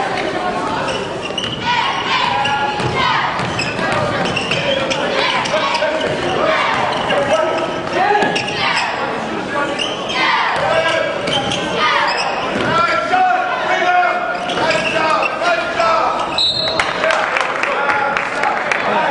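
Basketball game sound in a large echoing gym: the ball bouncing on the hardwood court amid a steady hubbub of crowd and player voices.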